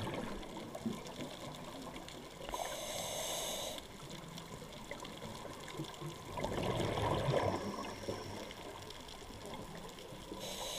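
A scuba diver's regulator breathing, heard underwater through the camera housing: exhaled bubbles rumbling at the start, a hissing inhale through the regulator about two and a half seconds in, then another burst of exhaled bubbles about six and a half seconds in.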